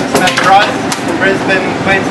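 Men talking, over the steady low hum of a boat engine running.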